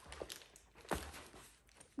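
Faint rustling of a nylon tote and the plastic wrap on its handles as it is handled, with a single sharp tap about a second in.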